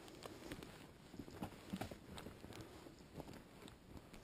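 Faint footsteps over a forest floor of needles, moss and dead twigs, giving irregular soft thuds and small crackles about two a second.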